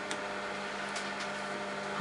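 Electric sewing machine running steadily, stitching a half-inch seam, with a few faint clicks.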